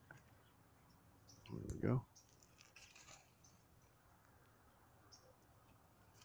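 Faint, scattered small clicks and handling noises from a phone camera being handled and adjusted, with a short spoken phrase at about two seconds.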